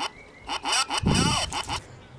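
A novelty 'No' button's voice chip, starved of current through a resistor and LED in series, stutters out short garbled fragments of its recorded 'No!'. About a second in comes one longer, distorted 'no'. It is the sound of the chip not getting enough current to articulate properly.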